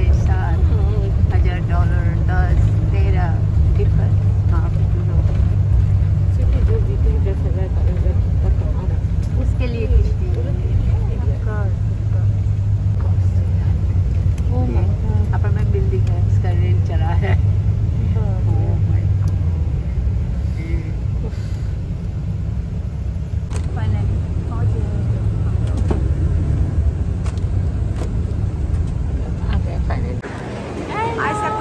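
Steady low engine and road rumble inside a moving bus, with passengers' voices in the background. The rumble eases a little about two-thirds of the way through.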